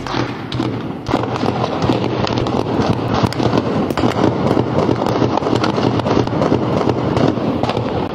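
Long volley of gunshots, many shots in rapid, uneven succession with a few louder cracks.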